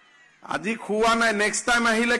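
A brief lull, then about half a second in a man's loud, strained speech into podium microphones starts again.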